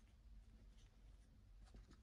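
Near silence with a few faint, brief rustles near the end, as a hand starts handling a quilted fabric handbag.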